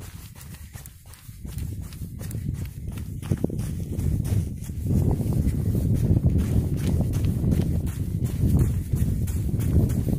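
Footsteps walking on sand and rock, a steady stepping rhythm of short crunches. A low wind rumble on the microphone grows louder about halfway through.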